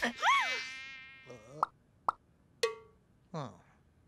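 Cartoon sound track: a mosquito's wavering whine cutting off right at the start, then a character's wordless vocal sounds. They are a swooping exclamation that dies away over about a second, followed by a few short clicks and brief grunts.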